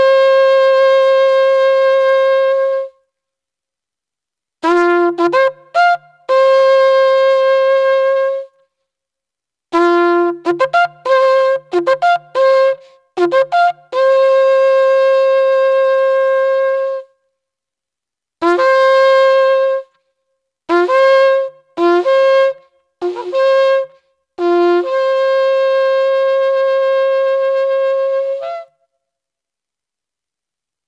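Kudu-horn shofar blown in a series of calls: quick runs of short blasts jumping between a low note and a higher note, with several long held blasts on the higher note, and silent pauses between the calls. The final long blast has a hiccup as it ends.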